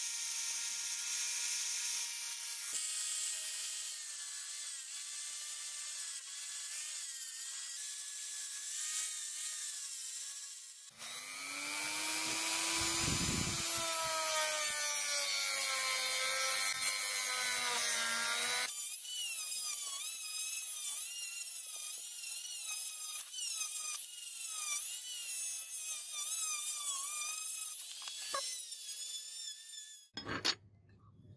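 Power tools sanding rust off a steel chopper blade: a rotary sanding wheel, then a drill-driven abrasive drum. Their motor whine wavers in pitch as they are pressed into the metal. The sound changes abruptly about 3, 11 and 19 seconds in as one sanding pass gives way to another.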